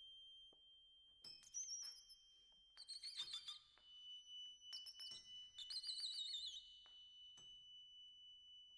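Quiet free-improvised music for piano, trumpet and accordion: a thin high tone held throughout, with high warbling squeals and light clicks coming and going, the piano played inside on its strings.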